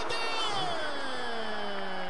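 A sports commentator's long drawn-out exclamation after a near miss, one held cry sliding slowly down in pitch, over steady stadium crowd noise.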